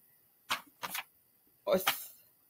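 A woman's short, breathy vocal sounds: a couple of quick puffs about half a second and a second in, then a brief voiced sound near the end, in a pause between words.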